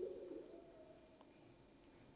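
A faint low cooing vocal sound in near silence, fading out a little over a second in.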